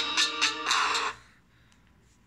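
Electronic music with a steady beat played through a smartphone's loudspeaker, the Xiaomi Mi A1. It is stopped about a second in, leaving faint room tone.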